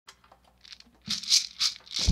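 Shaker strokes, about four short rhythmic rattles in the second half, opening a music track.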